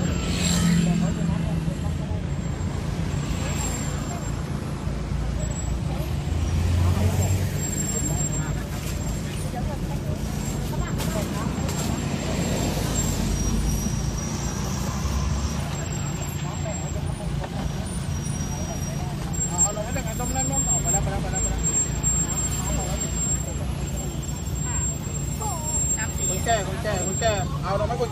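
A vehicle's engine running steadily at walking pace, a constant low hum heard from inside the cabin, with people's voices around it that come up more clearly near the end.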